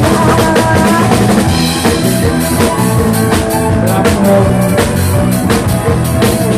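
A live band playing loudly, with the drum kit to the fore: kick drum and snare keep a steady beat under bass and other instruments.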